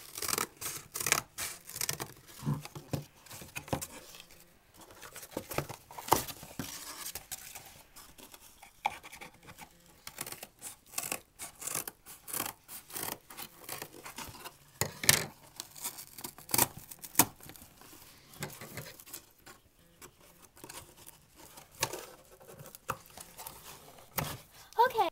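Scissors cutting through a cardboard box: a series of sharp, irregular snips and crunches, coming in clusters with short pauses between.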